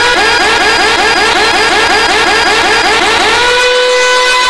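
Police siren sample in a DJ remix: a fast run of short rising whoops, about six a second, that settles into one held tone near the end.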